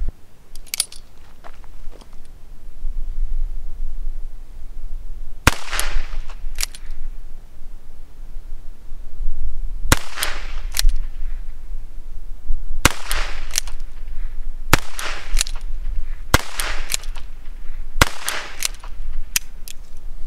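Ruger Wrangler single-action .22 LR revolver firing Winchester 40-grain lead round-nose rounds: a string of sharp single shots. The first comes about five seconds in, and the rest follow a second to a few seconds apart through to the end.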